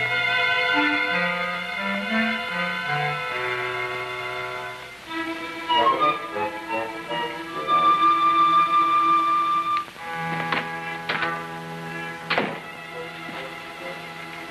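Orchestral film score led by strings, with sustained notes that shift in pitch and a long held high note in the middle. A few short, sharp accents come in the later part.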